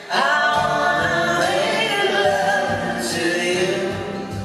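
Several voices singing together in harmony, entering abruptly just after the start and holding long sustained notes, over a quieter acoustic guitar accompaniment.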